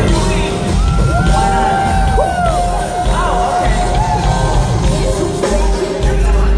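Live pop concert music: a woman singing into a handheld microphone, with long sliding vocal runs and a held note over band backing with a heavy bass beat, heard through a large hall with the crowd cheering under it.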